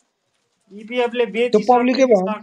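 A short moment of silence, then a person's voice starts talking about two-thirds of a second in, heard through an online audio chat room.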